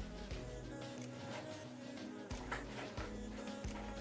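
Soft background music with steady held notes, and a few faint clicks from paper and scissors being handled.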